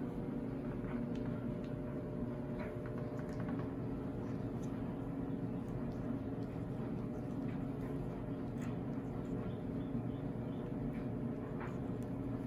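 Faint, scattered scratches of a very sharp metal dip-pen nib on paper as it writes, the nib catching in the paper's grain, over a steady low room hum.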